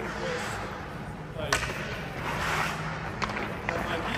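Hockey skate blades scraping and cutting on the rink ice, with a sharp knock about a second and a half in and a lighter click near the end.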